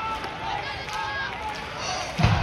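Voices calling out across a baseball ground in a few short, drawn-out shouts.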